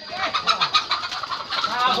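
A chicken giving a rapid run of squawks and cackles in alarm while it is being chased.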